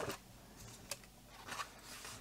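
Coloring-book pages being handled and turned: a few brief, soft paper rustles, with a small click about a second in.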